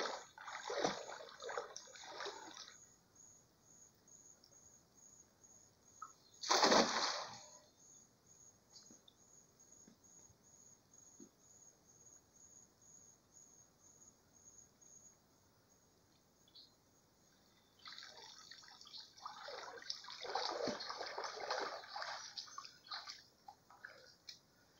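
A cast net landing on creek water with one short splash about seven seconds in. Near the end, water splashes and drips as the net is hauled back out of the shallow creek.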